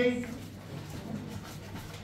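A man's voice trails off at the end of a word, then there is quiet room noise in a hall with a faint low hum.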